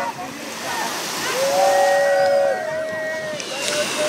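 Beach ambience: people's voices, with a few long held calls overlapping for a second or two near the middle, over a steady wash of surf and crowd noise.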